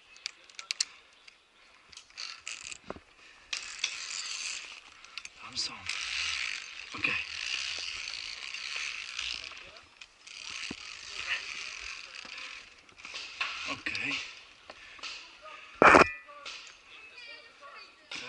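Metal safety carabiners clicking and scraping along a steel belay cable, with rope netting rustling as a climber works through a net obstacle on a rope course. A single sharp metallic clank about sixteen seconds in is the loudest sound.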